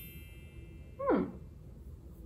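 A woman's short wordless vocal sound, falling steeply in pitch, about a second in, over a faint high ringing tone that fades out soon after.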